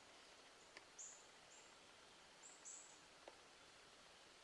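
Near-silent woodland: a few faint, short, very high chirps about a second in and again near the three-second mark, with two soft ticks.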